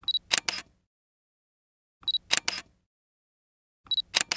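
Camera shutter sound effect repeated about every two seconds: each time a short high beep, then two quick shutter clicks. It sounds three times, the last near the end.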